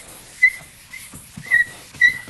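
Chalkboard eraser wiped in strokes across a blackboard, a soft rubbing with three short high squeaks about half a second apart.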